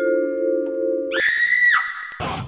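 Intermission jingle: a held chord of mallet-percussion tones that cuts off just over a second in, replaced by a higher held tone that dips down shortly before the end.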